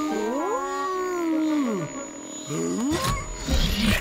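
A cartoon dragon's wordless vocal sound effect: one long wavering cry that rises and then falls over about two seconds, then a shorter one, over background music. A noisier rush of sound comes near the end.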